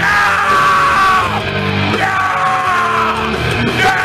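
Death metal band playing live: distorted electric guitars, bass and drums, loud throughout. A high note slides down in pitch three times, about two seconds apart.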